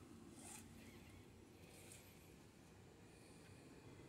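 Near silence: room tone, with two faint, brief hisses about half a second and two seconds in.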